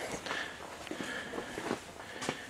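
Faint footsteps on a concrete floor.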